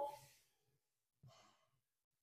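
Near silence, with one faint, short breath about a second and a half in.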